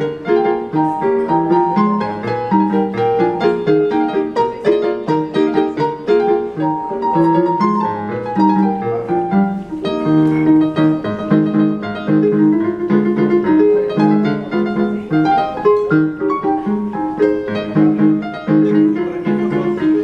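Portable electronic keyboard played with both hands on a piano voice: a continuous, lively stream of notes and chords.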